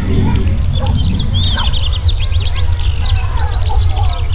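A flock of small birds chirping busily, many quick overlapping calls, over a loud steady low drone.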